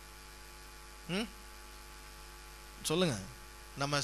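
Steady low electrical mains hum, broken by a man's voice speaking briefly about a second in and again near three seconds.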